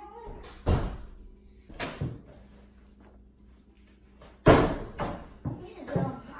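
A series of sharp thumps and bangs, like a door banging, the loudest about four and a half seconds in.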